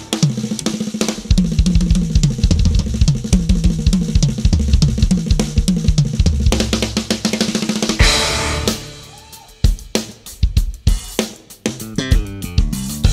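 Live jazz band playing with the drum kit to the fore: busy snare, bass drum and cymbal work over a low pitched bass line. About eight seconds in a loud accented hit lands, and the playing drops to quieter, sparse strokes.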